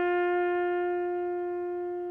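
A horn blowing one long, steady held note that slowly fades.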